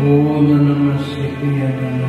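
Yamaha electronic keyboard playing slow, sustained chords, which shift about a second in.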